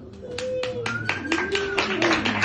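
Audience applause starting up after a song: a few scattered claps about a quarter second in, thickening into fuller clapping near the end, with a couple of drawn-out calls from listeners.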